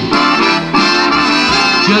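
Jazz big band, saxophones and brass, playing sustained swing chords with drums in an instrumental passage between vocal lines.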